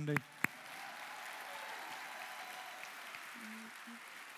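Large audience applauding steadily, an even patter of many hands clapping together.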